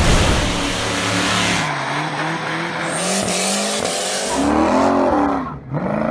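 A car engine revving hard under a loud hiss of tyre squeal and skidding; the engine note rises near the end.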